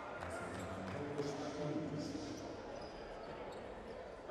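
A basketball being dribbled on a hardwood court, short sharp bounces over a steady background of crowd voices.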